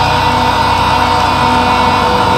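Technical death/thrash metal: a sustained, held chord over a fast, steady low pulse, loud throughout.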